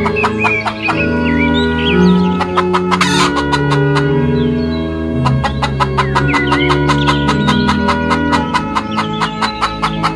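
Hens clucking in fast runs and chicks peeping, over background music of slow, held low notes.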